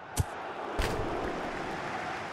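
A short edited-in transition sound between discussion segments: two sharp hits over a rush of noise that swells and then fades away.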